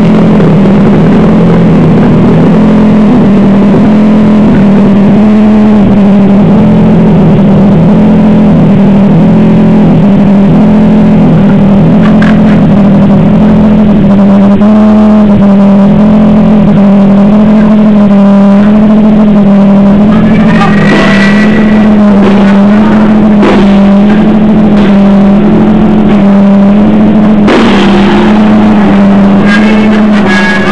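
A live noise-rock band dominated by a heavily distorted bass droning a riff that rocks back and forth between two close low notes. The sound is loud enough to overload the small camera microphone, so the other instruments come through faintly. From about two-thirds of the way in, sharp hits and higher ringing tones cut in over the drone.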